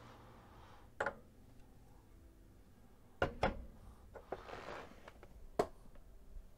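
Beer glass and bottle being handled on a desk: a few sharp clicks and knocks, the loudest two just after three seconds, with a short soft hiss about four and a half seconds in.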